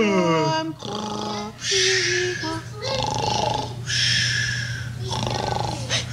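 A sung line gliding down in pitch to its end, then a puppeteer voicing a creature puppet's rasping, breathy noises four times, about once a second. A steady low hum runs underneath.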